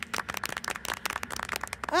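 A small group clapping, a quick irregular patter of claps that stops about two seconds in.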